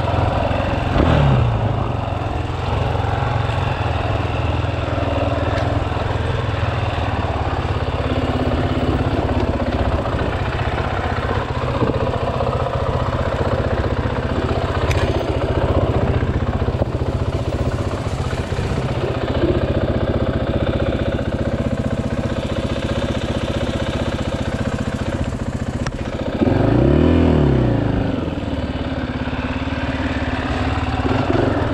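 2018 KTM 500 EXC-F single-cylinder four-stroke dirt bike engine running at low revs while ridden slowly. There is a short blip of throttle about a second in, and a longer rev that rises and falls near the end.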